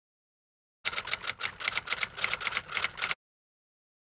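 A quick run of sharp clicks, an edited-in sound effect over the end screen, starting about a second in and cutting off abruptly about two seconds later.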